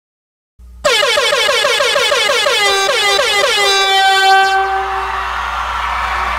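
Air horn sound effect in a dance-music mix. It starts about a second in after total silence, blares with a quick wobble of about four a second, then settles into one long held tone that fades, over a low hum.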